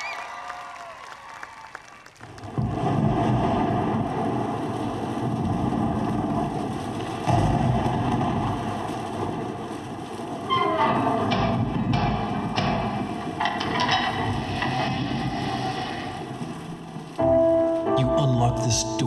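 Thunderstorm sound effect of rumbling thunder and rain-like hiss, starting suddenly a couple of seconds in, with sharp cracks partway through. Near the end a held musical tone starts abruptly.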